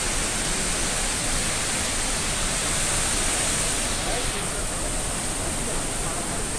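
A large waterfall's water falling, a steady, even rushing noise with no breaks.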